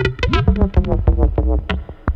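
Buchla Red Panel modular synthesizer patch playing a quick stream of short, plucked electronic notes at jumping pitches over a deeper bass layer, with one note bending in pitch about half a second in.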